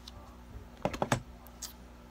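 A foil pouch crinkling as it is handled, a quick cluster of crackles about a second in and a fainter one shortly after.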